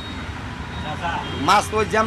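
Steady traffic noise from a roadside, then a man begins speaking about a second and a half in.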